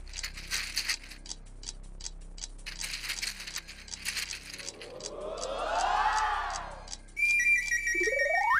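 Tambola tokens rattling and clattering as they are shaken to draw a number. About five seconds in, a swelling comic sound effect sweeps up and falls away, and near the end a high held tone sounds with a whistle gliding up into it.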